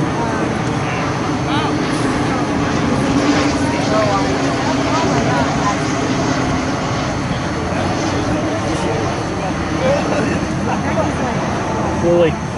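Indistinct shouts and calls of rugby players and sideline onlookers across an open field, no clear words, over a steady drone that is strongest in the first half.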